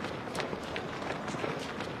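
Hurried footsteps, about three sharp steps a second, over a steady background hiss.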